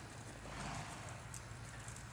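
Hoofbeats of a ridden horse moving over dirt ground, with a steady low hum underneath.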